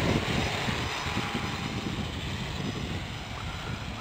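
Electric motors and propellers of a radio-controlled hexcopter running on a 3-cell LiPo battery, a steady buzzing whir as it hovers low. It fades slightly as it drifts away.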